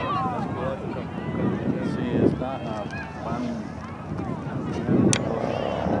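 Indistinct shouting and calling of players and spectators at an outdoor soccer match, with wind rumbling on the microphone. A single sharp knock sounds about five seconds in.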